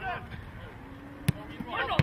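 A football kicked once with a sharp thud about a second in, among shouting voices.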